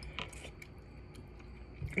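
Faint chewing of a mouthful of noodles, with a few soft clicks in the first half-second.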